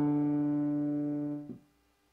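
Piano holding the closing two-note chord of a two-part harmonic dictation, an octave on D (D3 and D4), the same notes it began on; the chord fades and is released about a second and a half in with a soft key-off thump.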